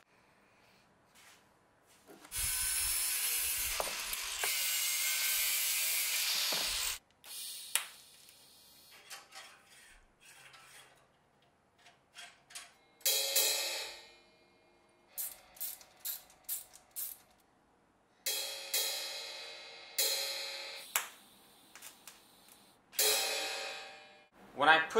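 Angle grinder cutting a metal rod clamped in a vise, a steady noise for about four and a half seconds. Then clicks and taps of metal parts being fitted, and several cymbal strikes from the machine's cymbal lever that ring and die away, the last near the end.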